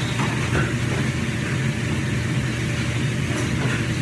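A steady low mechanical hum with no change in pitch or level.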